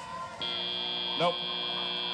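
FIRST Robotics Competition end-of-match buzzer: a steady electronic tone that starts about half a second in as the match timer reaches zero, signalling the end of the match.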